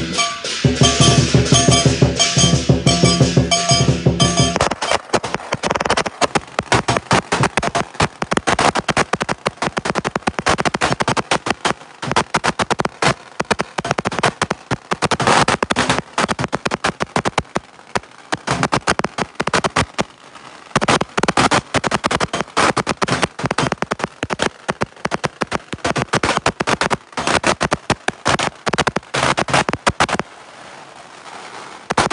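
Lion-dance drum and cymbals playing for about the first four seconds, then a long string of firecrackers going off in rapid, irregular pops, thinning briefly around two-thirds of the way through.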